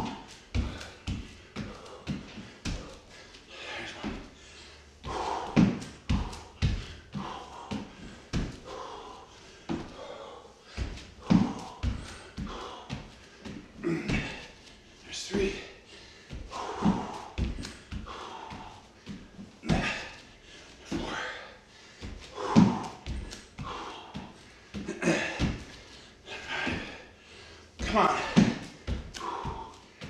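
Repeated thuds of hands and feet landing on a hardwood floor during burpees without a push-up, with hard breathing between the landings.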